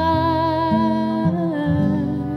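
A woman's voice holding a long wordless note with a wide vibrato, stepping down in pitch partway through, over acoustic guitar chords that change beneath it.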